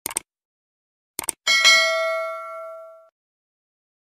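Subscribe-button sound effect: two quick mouse clicks, two more about a second later, then a single bright bell ding that rings out and fades over about a second and a half.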